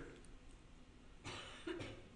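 A man's short, faint cough about a second in, followed by a weaker second throat sound, over quiet room tone.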